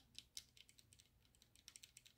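Near silence with a scattering of faint, light clicks and taps.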